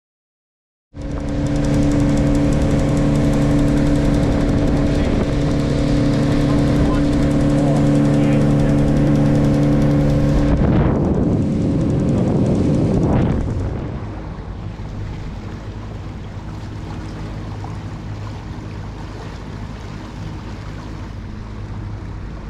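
A boat's outboard motor running at speed, a steady loud drone with rushing wind and water. About eleven seconds in it throttles back, and after a short surge of noise it runs on slow and noticeably quieter.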